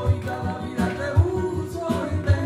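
Live flamenco music: two guitars playing with a voice singing, cut through by several sharp percussive strikes.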